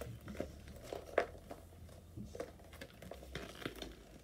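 Rustling and small scattered clicks of a purse being handled as rings are put into it, with one sharper click about a second in.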